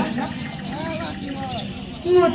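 Faint voices and murmur over a steady low background hum, quieter than the actors' amplified lines around them.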